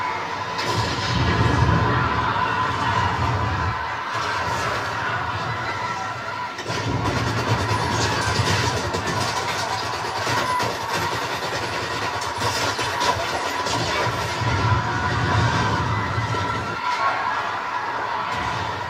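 A film soundtrack played back through a screen's speakers: music and crowd commotion, with three deep rumbling swells that come and go.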